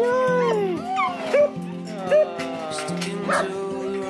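Dog whining and yipping in excited greeting: repeated high cries that rise and fall in pitch, several in quick succession, over background music with held notes.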